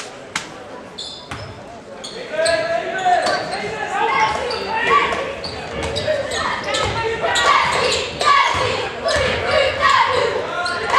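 A basketball bouncing on a hardwood gym floor amid the voices and shouts of players and spectators, echoing in a large gym. It is quieter for the first two seconds, then the voices and bounces pick up about two and a half seconds in.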